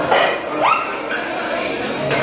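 Indoor crowd chatter, with a short high-pitched voice sliding upward a little over half a second in.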